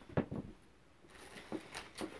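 Faint handling sounds of a cardboard shoebox being picked up: a few light knocks and rustles, one group near the start and more in the second half.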